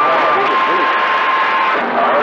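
CB radio receiver hiss carrying a steady whistle that steps down slightly in pitch about halfway through and drops out near the end, with a faint, garbled voice underneath. The whistle is a heterodyne between two signals on the same channel, typical of skip reception.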